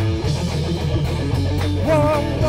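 Live rock band playing an instrumental stretch between sung lines: electric guitar over bass and drum kit, with the vocal coming back in at the very end.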